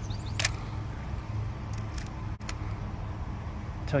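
Clicks from a fully mechanical 1970s film camera as its film advance is wound on after loading, bringing the frame counter toward zero: one sharp click just under half a second in and fainter clicks around two seconds in, over a steady low rumble.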